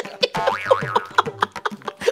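Comic sound-effect music: springy notes that slide up and down in pitch over a quick, light percussive beat.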